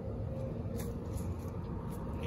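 A steady low rumble of outdoor background noise, with a couple of faint, brief rustles.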